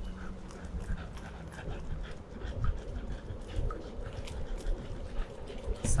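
A Staffordshire bull terrier panting as it trots on a leash, with short irregular breaths. Underneath is a steady low rumble of longboard wheels rolling on asphalt.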